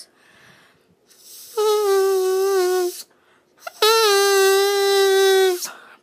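Drinking straw with its end cut to a point, blown as a double reed: two held notes of about a second and a half each, the first sagging slightly in pitch at its end, each preceded by a short breathy hiss.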